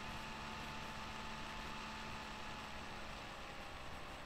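Steady background hiss with a faint electrical hum; a low hum tone drops out shortly before the end.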